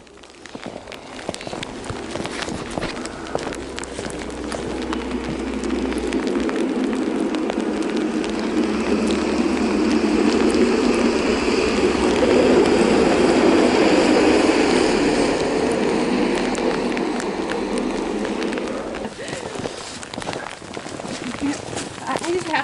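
Snowplow passing by: a noisy rush that grows steadily louder, is loudest a little past the middle, then fades away about three seconds before the end.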